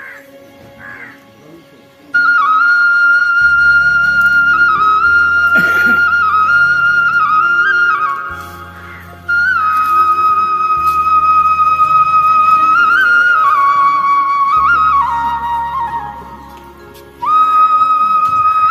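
Background flute music: a slow melody of long held notes over low sustained bass notes. It starts about two seconds in and plays in three phrases with short breaks between them.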